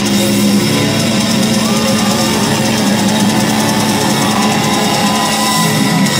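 Heavy metal band playing live through a festival PA: distorted electric guitars and a drum kit, loud and steady, with notes sliding in pitch partway through.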